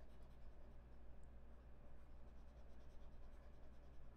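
Faint scratching of a stylus scribbling to shade in small squares on a tablet, over a low steady hum.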